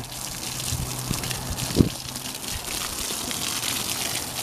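Water from a garden hose spraying and splashing onto compost-filled strawberry planters, a steady hiss, with one brief thump a little under two seconds in.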